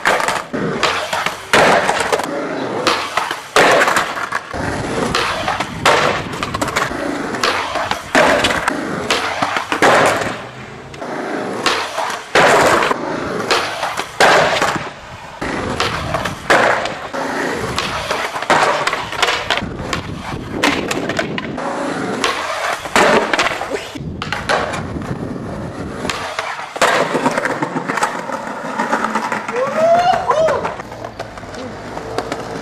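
Skateboard wheels rolling over stone paving, with repeated sharp clacks of the board: pops, landings, and the board slapping down on the stone and stairs when the skater bails.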